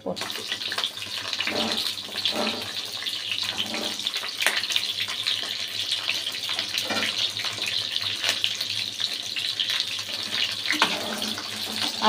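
Hot oil in a kadai sizzling as peeled pointed gourd (potol) pieces go in and fry: the sizzle starts suddenly and then runs on as a steady crackling hiss.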